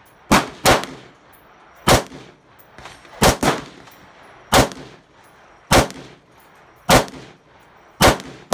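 AR-style rifle firing eight single shots, unevenly spaced about a second apart, with two quick pairs: one near the start and one about three seconds in. Each shot is followed by a short echo.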